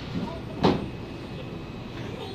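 A single short, sharp knock about two-thirds of a second in, over a steady low background hum.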